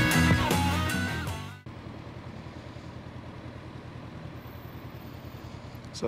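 Rock music fades over the first second and a half and is cut off. After that a Honda CB500F's parallel-twin engine idles steadily.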